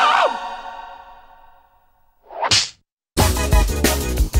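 A cartoon cry and music end just after the start and fade away over about two seconds. A short whoosh sound effect comes about two and a half seconds in, followed by a brief silence, and then upbeat music starts just after three seconds.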